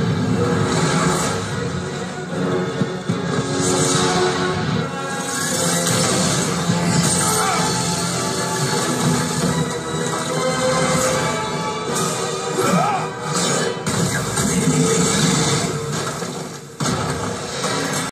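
Action-film soundtrack playing through a television speaker: continuous dramatic music mixed with crashes and explosion effects from a battle scene.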